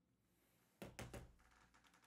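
Near silence, broken by a few faint taps and thunks of handling noise, clustered about a second in.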